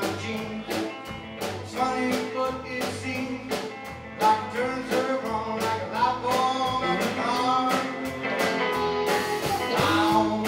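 Live band music: a man singing over electric guitar and a drum kit keeping a steady beat, in a country-blues style.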